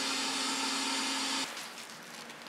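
Dental high-volume vacuum suction running with a steady hiss and hum, drawing off the phosphoric acid etching gel, then cutting off abruptly about one and a half seconds in.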